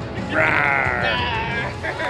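A person's high, wavering voice with no words, in a stretch of about a second followed by a shorter higher one, over background music.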